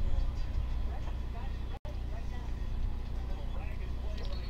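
A steady low rumble with a faint voice underneath; the sound cuts out for an instant a little under halfway through.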